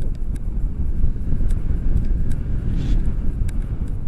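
Wind rushing over a selfie-stick camera's microphone in paraglider flight: a steady, loud low rumble with a few faint ticks.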